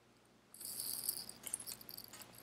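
Faint rustling and light clicking of tarot cards being handled, starting about half a second in.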